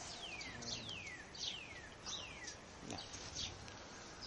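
A bird singing a run of clear whistled notes, each sliding down in pitch, repeated about three times every two seconds.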